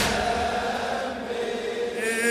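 Male chanting of a mourning elegy: a single soft note held between louder sung lines.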